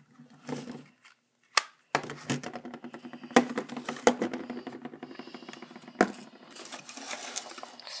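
Plastic clicks and knocks of mobile phones being handled on a wooden table, with slide-out keyboards snapping open and phones set down. From about two seconds in, a steady low hum runs under the clicks.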